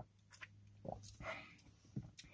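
A person swallowing carbonated soda from a can: a few quiet gulps about a second apart.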